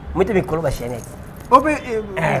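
Speech only: a person talking, with no other clear sound.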